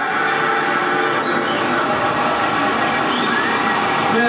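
Harsh, dense electronic noise from a keyboard synthesizer: a loud, steady wall of noise with many faint tones layered through it, without singing.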